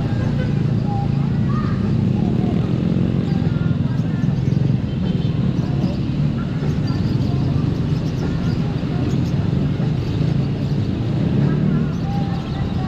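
Honda ADV 150 scooter's small single-cylinder engine running, with road and wind noise, as heard from on the scooter; the sound stays at a steady level.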